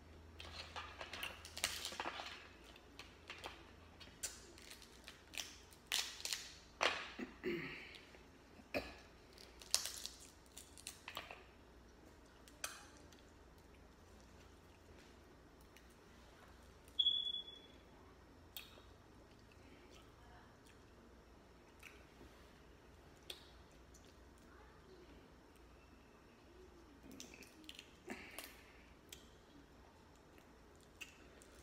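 Eating sounds: shellfish shells crackling as they are peeled by hand, with chewing and wet mouth noises, busiest in the first dozen seconds and sparse after. About 17 seconds in comes one short high squeak.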